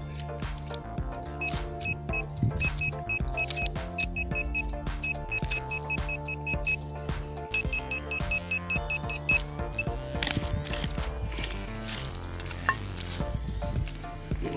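Handheld GP-Pointer metal-detecting pinpointer beeping in short repeated pulses as it is probed in a dug hole, signalling metal close by; the beeps come faster and brighter for a couple of seconds near the middle and stop about two-thirds of the way through. Background music plays underneath.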